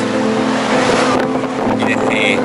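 A motorboat engine running steadily, a constant drone, over a haze of wind and water noise.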